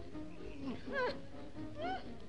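Two short, high-pitched laughing squeals from a voice, one about a second in and one near the end, over background music.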